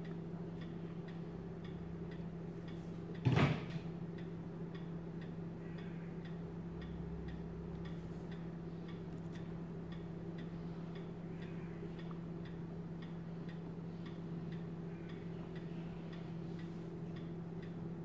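A steady low hum with faint, even ticking about twice a second throughout. A single louder knock comes about three seconds in.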